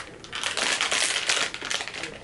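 Blind-box figure's green plastic wrapper crinkling and crackling as it is handled and the figure is pulled out.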